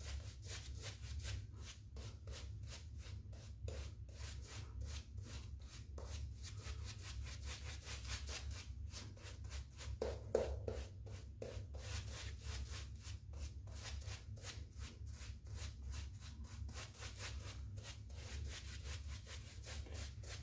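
Badger hair shaving brush rubbing sandalwood glycerin soap lather onto the face, a faint soft scrubbing in quick repeated strokes.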